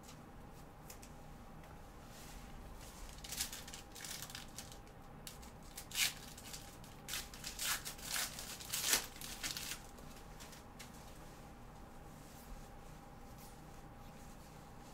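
Trading card packs being torn open and their foil wrappers crinkled: a run of short tearing and crinkling sounds through the middle, loudest about six and nine seconds in, over a faint steady hum.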